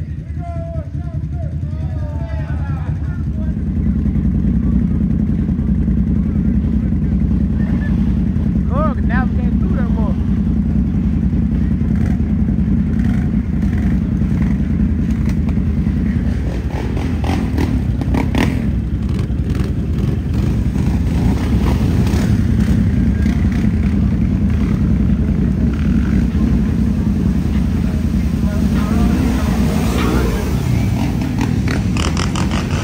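ATV engine running hard through a mud hole, a steady loud drone that swells in over the first few seconds and holds. Scattered knocks and clatter come through the middle.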